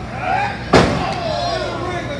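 A single sharp, loud impact about three-quarters of a second in, from wrestlers brawling at ringside, amid spectators' shouting voices.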